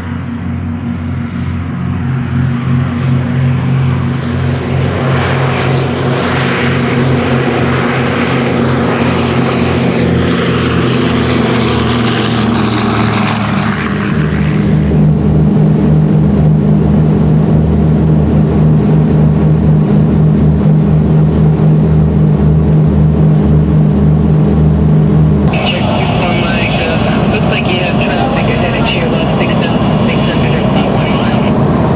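Twin radial piston engines of a Douglas DC-3 running at high power, swelling as the aircraft comes down the runway. About halfway through, the sound changes to the steady, deep engine drone heard inside the aircraft. Near the end it changes again, with more high-pitched noise mixed in.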